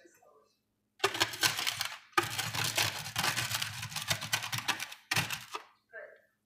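Salt rattling and grinding against the rim of a glass mug as the rim is salted, in three loud gritty bursts, the middle one nearly three seconds long.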